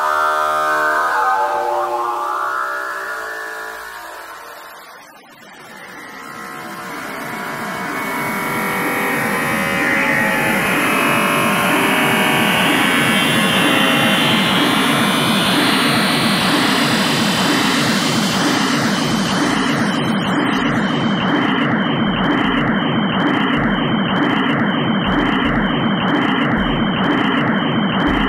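Experimental electronic noise music. One dense synthesized sound fades out about five seconds in, and a noisy drone fades back in with a high sweep that slowly falls. It then settles into a buzzing texture pulsing about once a second.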